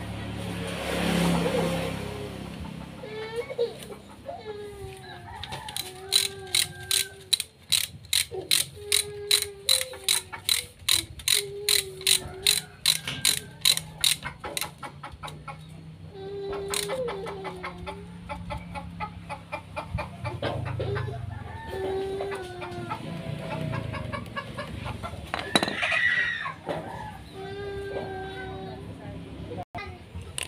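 Ratchet wrench clicking in a quick, even run of about three clicks a second for some eight seconds, as the engine oil drain bolt of an automatic scooter is screwed back in. Animal calls in the background.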